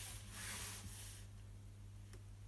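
Brief, faint sliding rub of a plastic set square and spiral sketch pad being shifted across a wooden desk, fading out about a second in, over a steady low electrical hum.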